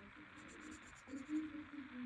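Faint scratching of a fine-tipped pen drawing on paper, with a faint low voice in the background over steady hiss.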